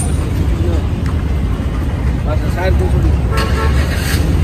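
Steady low rumble of car traffic and idling taxis, with a car horn sounding briefly near the end.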